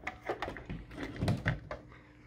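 A run of light clicks and knocks, with a couple of duller thumps about halfway through, as the pachinko machine's power plug is handled and pushed into a wall outlet.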